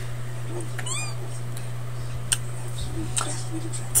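A single short, high meow about a second in, rising then falling in pitch, over a steady low electrical hum.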